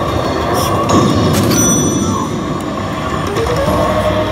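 Basilisk Kizuna 2 pachislot machine playing its effect sounds during a lead-up to a bonus announcement, over the loud, dense din of a pachinko hall, with a few sharp clicks about a second in.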